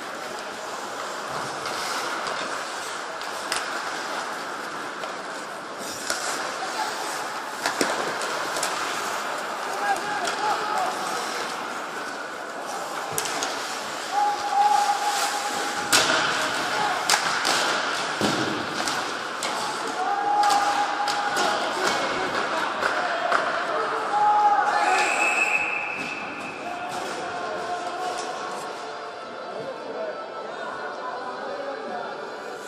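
Ice hockey play on a rink: sharp knocks of sticks and puck on the ice and boards come at irregular intervals over steady arena noise, with short shouts from players or spectators now and then.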